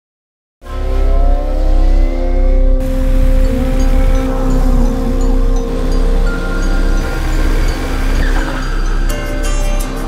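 After a brief silence, motorcycle engines revving, rising in pitch, over the opening of a film song's soundtrack: a heavy pulsing bass and held synth notes.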